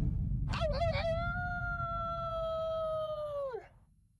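A single wolf howl. It wavers briefly as it starts about half a second in, then holds one long steady note that slides down and cuts off near the end. A low rumble beneath it fades away.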